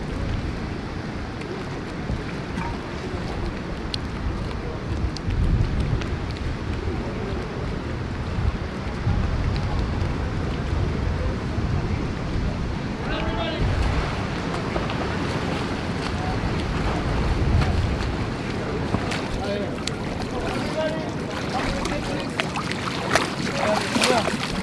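Wind rumbling on the microphone over water lapping and splashing in a swimming pool as uniformed swimmers tread water. Faint voices come in about halfway through and again near the end.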